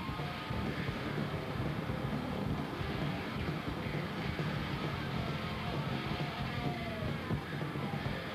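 Heavy metal band playing live: loud, heavily distorted electric guitar and bass over drums, a dense and continuous wall of sound.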